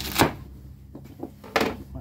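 Two sharp thuds about a second and a half apart: a knife forced through a bar of soap with a loofah sponge set inside it, knocking against the cutting surface.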